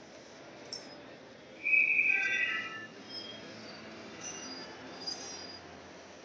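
Ice rink noise during a stoppage in play, with a shrill whistle-like squeal lasting about a second that starts near two seconds in. A few faint clicks are scattered through it.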